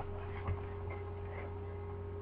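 Room tone: a steady low electrical hum, with one faint knock about half a second in.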